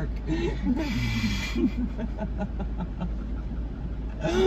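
People laughing and snickering under their breath, with short bursts of voiced laughter in the first second and a half, then fainter breathy sounds, over a steady low hum.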